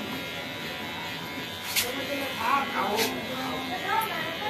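Two sharp snips of barber's scissors cutting a baby's hair, about two and three seconds in, over a steady electric buzz.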